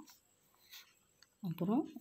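Pencil scratching faintly on lined notebook paper in short strokes as small crosses are drawn, the clearest stroke just under a second in.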